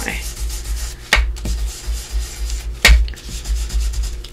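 Ink blending tool scrubbed back and forth over an embossed paper envelope, working archival ink into the raised texture. Two sharp taps cut through the rubbing, about a second in and again near three seconds.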